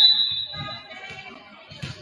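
A referee's whistle blast, high and loud at the start and fading over about a second in the gym's echo. A single sharp smack comes near the end.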